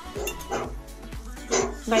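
Voices talking over background music, with small clicks of a metal fork against a china plate; the voices grow louder near the end.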